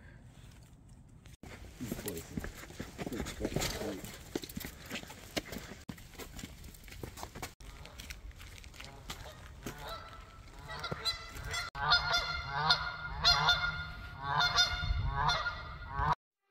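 Canada geese honking: a run of short calls that starts about ten seconds in and goes on at roughly one and a half calls a second.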